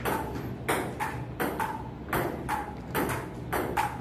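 Table tennis rally: a plastic ball clicking off paddles and the tabletop in a string of sharp tocks, about two or three a second at an uneven pace, each with a short hollow ring.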